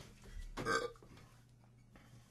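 A person's short vocal noise about half a second in, after a click at the very start; a faint low hum lies under it.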